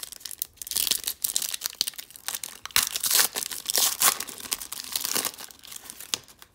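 A foil hockey-card wrapper (2019-20 O-Pee-Chee Platinum pack) crinkling and tearing as it is ripped open by hand, a dense run of crackles and rips that is loudest through the middle and eases off near the end.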